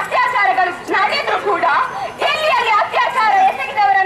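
A young woman making a speech into a microphone, talking continuously.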